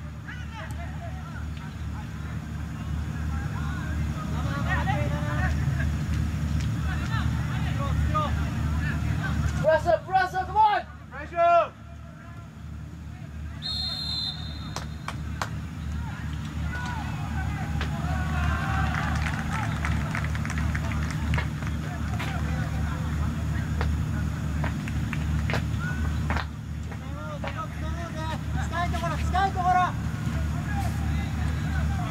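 Players' voices calling across an outdoor football pitch over a steady low rumble, with a burst of loud, close shouts about ten to twelve seconds in. A brief high whistle sounds about fourteen seconds in.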